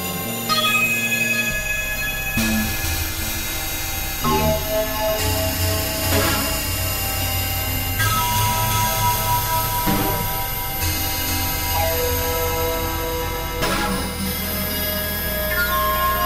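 Experimental synthesizer music: layered held tones over a low drone. The chord shifts every few seconds, with a few struck, ringing notes along the way.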